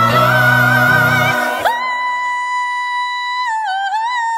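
Gospel choir and band singing together, then a little under halfway through the band and choir cut out, leaving a solo female voice holding one long, very high note. Near the end the note wavers and bends into a short vocal run.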